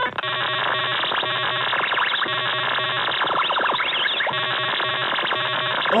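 Harsh, glitchy computer-generated noise from a malware payload: a fast repeating grainy pattern crossed by rising and falling pitch sweeps, at a steady level.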